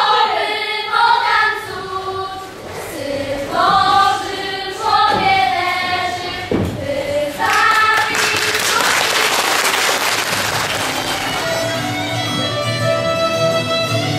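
A group of young voices singing together, breaking off about eight seconds in, then a stretch of noise. Near the end, fiddle music with plucked strings begins.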